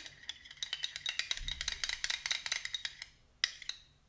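A spoon stirring in a small glass bowl, rapid light clinks against the glass that thin out after about three seconds, with one last clink shortly after.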